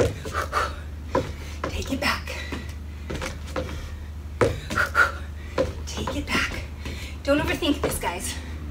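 A woman working out hard, her quick breaths and her trainers shuffling and landing on a wooden deck as she throws shuffle-kicks and punches, in a run of short sharp sounds. A low steady hum lies underneath, and a brief voice sound comes near the end.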